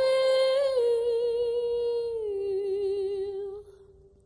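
A woman's voice holds one long, wordless note with vibrato. It steps down in pitch about halfway through and fades out shortly before the end.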